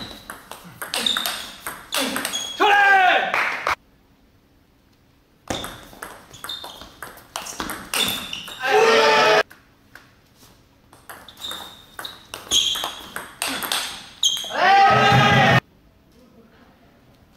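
Table tennis rallies: quick runs of sharp clicks as the ball hits the rackets and the table. Three times, a rally ends in a loud, drawn-out shout, and the sound cuts off suddenly after each shout.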